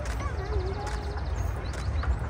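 A small narrow-gauge steam locomotive approaching slowly with its train of open carriages, heard as a steady low rumble, with short high chirps and whistles over it.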